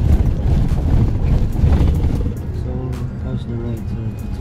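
Cabin noise of a Mitsubishi Montero Sport's 2.4-litre diesel on the move: a loud, steady low rumble of engine and tyres, with faint voices about three seconds in.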